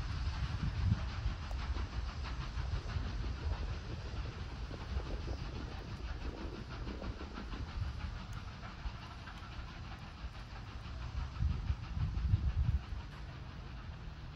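Steam locomotive working out of sight in the distance, its exhaust beats faint, over a low irregular rumble that swells near the end.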